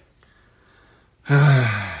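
A man's long, voiced sigh that falls in pitch, starting about a second and a third in after a near-quiet start.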